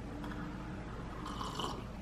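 A person sipping a drink from a mug, a faint slurp about one and a half seconds in, over low room noise.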